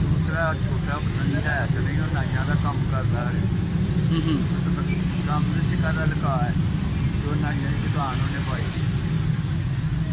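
Quiet, broken speech over a steady low rumble that runs without a break.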